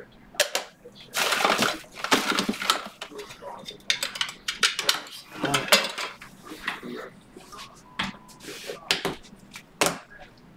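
Trading cards and plastic card holders being handled on a desk: rustling, with an irregular run of light clacks and taps.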